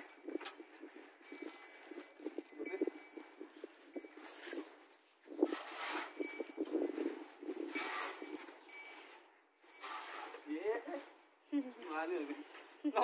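Scraping and scuffling in loose, dry dirt in irregular bursts, as a stick-like hand tool is worked through the soil, with a few short knocks.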